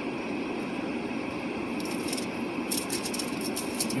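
Steady background hum of a car cabin, with soft rustling of thin Bible pages being leafed through around two and three seconds in.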